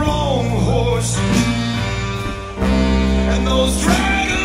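A live band playing a blues-rock number, with a steady low bass line under a lead melody of bending notes. The low end drops out briefly about two and a half seconds in, then comes back.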